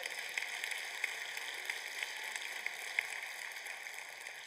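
A large congregation applauding softly, many scattered claps blending into a steady patter that tapers off near the end.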